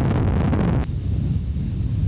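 Breath blown directly onto a Rode VideoMicro shotgun microphone, heard through that microphone as loud wind-blast noise. At first, with the capsule bare, it is a full, hissy rush. About a second in it changes to a duller, lower rumble with the furry dead-cat windscreen fitted, which cuts much of the hiss.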